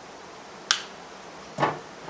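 A single sharp metallic click as stainless big game pliers squeeze the eye of a Mustad 4202 hook closed around a crane swivel.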